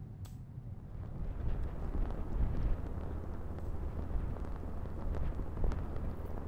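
Wind buffeting the microphone on an open links course: a low, rumbling rush that swells a little after the first second.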